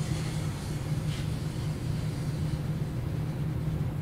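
Steady low hum of room background noise in a lecture room, with no distinct events.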